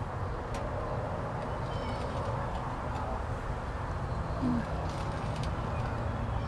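Outdoor background noise: a steady low rumble with a few faint, short high chirps about two seconds in.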